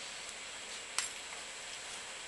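A single sharp click about a second in, against faint steady room hiss: a hand crimping tool closing on a wire terminal.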